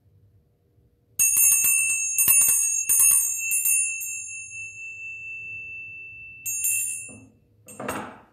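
Small bells shaken in a quick run of strikes for about two and a half seconds, their high tones ringing on and fading, then shaken briefly again near the end, rung to mark the start of Mass. A dull knock follows just before the end.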